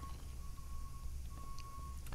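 Quiet room tone: a steady low hum, with a faint thin high whine that comes and goes.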